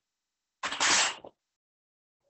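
Hot water dumped from a glass canning jar splashing into a stainless steel sink: one short splash lasting under a second.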